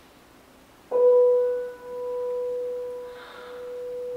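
A single piano note, struck about a second in and left to ring for about three seconds, its level dipping and swelling as it dies away. It gives the starting pitch for unaccompanied singing.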